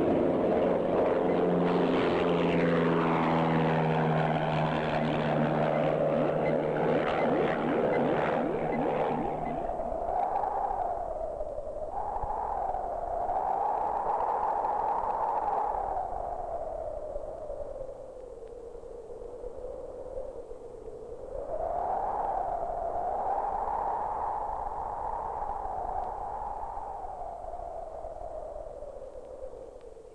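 A low-flying biplane's propeller engine passes overhead, its pitch dropping about two seconds in, and cuts off about ten seconds in. After that a single tone slowly wavers up and down, fading near the end.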